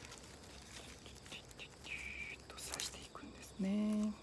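Faint rustling of cut rose stems being handled, with a brief hiss about halfway. Near the end a man gives a short hummed "mm" on one steady pitch, the loudest sound.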